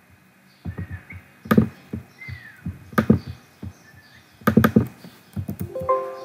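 Computer keyboard keystrokes and mouse clicks: a handful of sharp, irregularly spaced taps. Faint short chirps sound behind them, and a steady held tone starts near the end.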